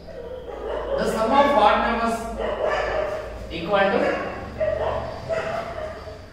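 A man's voice talking, the same speech pattern as the surrounding lesson narration, in words the recogniser did not write down.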